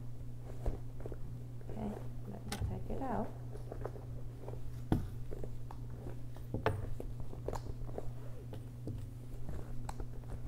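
Small items being packed by hand into a quilted leather camera bag: scattered light clicks and knocks of objects and metal hardware being handled, with soft rustling. A steady low hum runs underneath.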